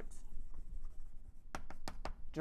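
Chalk writing on a blackboard: faint scraping strokes, then a few sharp chalk taps about one and a half seconds in.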